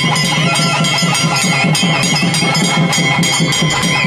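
Festival music: drums beaten in a fast, steady rhythm of about six strokes a second, with a high wavering melody line over steady sustained tones.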